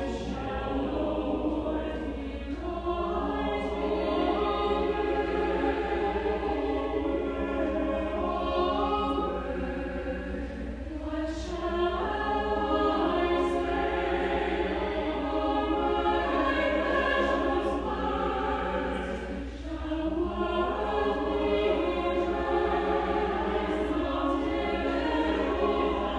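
Choir singing a slow, sustained passage in several parts, in long phrases broken by brief pauses about every eight seconds.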